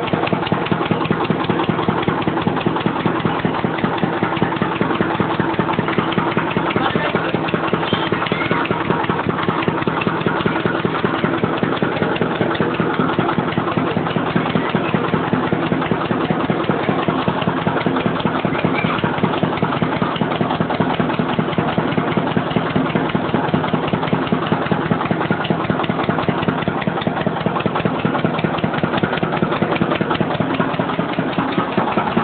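Small engine running steadily with a fast, even beat, driving the rollers and flywheel of a sugarcane juice crusher.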